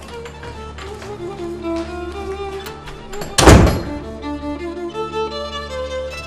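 Slow string-led drama score with held violin and cello notes, broken about three and a half seconds in by one loud heavy thud, a wooden front door being shut.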